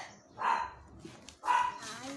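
A dog barks twice, about a second apart.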